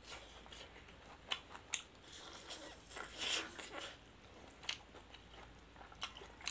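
Close-up eating noises: chewing and biting into boiled chicken and rice, with a few sharp clicks and a louder stretch of chewing in the middle.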